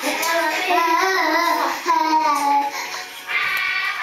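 A child's high voice singing a melody with music, the notes gliding and held, with short breaks between phrases.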